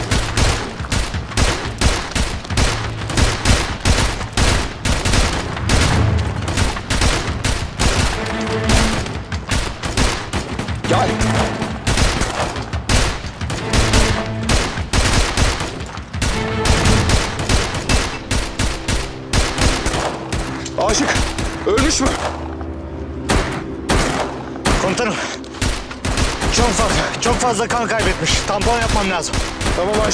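Sustained automatic rifle fire, many shots in quick succession, over a dramatic music score that grows louder about halfway through.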